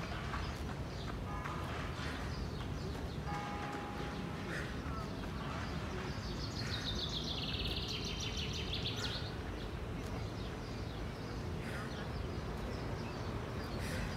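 Birds calling over a steady outdoor background noise: a few short chirps in the first few seconds, then a rapid high trill lasting about three seconds midway.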